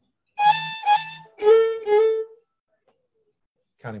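Violin playing four short notes: two higher ones, then two held lower ones about an octave down, before it stops.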